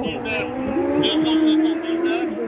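Engine of a rally competitor running on the special stage at night, a steady note that rises slightly in pitch and grows a little louder near the middle.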